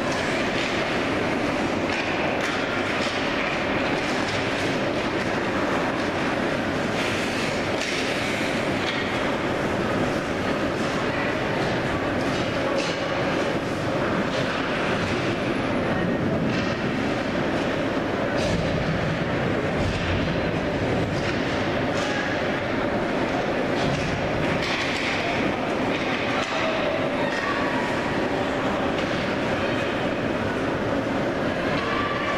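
Indoor ice hockey game din: a steady rumble of skate blades on the ice, dotted with scattered clacks of sticks and puck, under the chatter of spectators.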